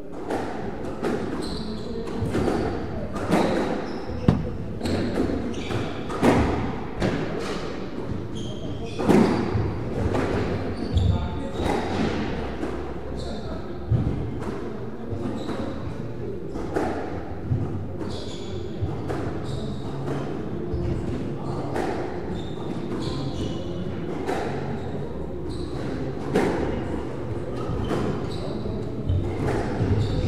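Squash being played: the hard rubber ball struck by rackets and smacking off the walls and wooden floor in irregular sharp cracks, with short squeaks of shoes on the court floor.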